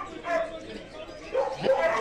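Dogs barking and yipping, with people talking in the background.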